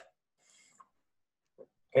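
Near silence in a pause, broken by two faint, very short sounds about a second and a second and a half in; a man's voice starts right at the end.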